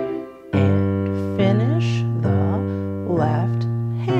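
Digital piano playing a 12-bar blues pattern in C: a right-hand C major triad struck long, short, short with the left-hand bass notes. The chords are struck about four times, the first about half a second in.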